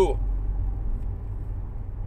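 Steady low rumble of a car, heard from inside its cabin.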